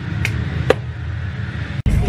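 Steady low room hum with two short clicks in the first second, cut off abruptly near the end.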